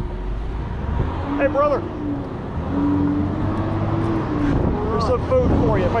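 Traffic on a busy multi-lane road: a steady low rumble of cars passing, with one long, even engine hum through the middle. Voices break in briefly about a second and a half in and again near the end.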